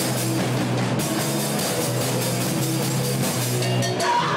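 Loud heavy rock played by a band: drum kit, bass guitar and electric guitar.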